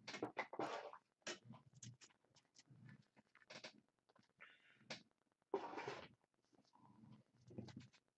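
Trading cards being handled on a tabletop: irregular short rustles, slides and soft taps as stacks of cards are picked up and moved.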